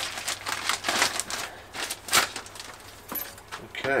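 Thin clear plastic bag crinkling and rustling in irregular bursts as a propeller is worked out of it, settling down about halfway through.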